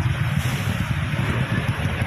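Wind buffeting the microphone: a loud, unsteady low rumble with a rushing hiss above it.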